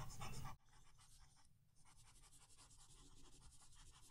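Near silence, with a faint sound in the first half second and a few faint ticks near the end.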